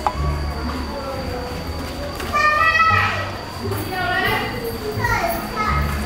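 A small child's high voice calling out three times in short bursts, the first and longest a little over two seconds in, with low thuds between the calls.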